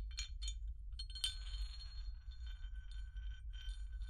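Metal parts of a field-stripped pistol handled by gloved hands. A few light clicks come first; a sharper metallic click a little over a second in is followed by about two seconds of metal sliding and ringing with a steady high tone, and the same sound starts again near the end. A low steady hum runs underneath.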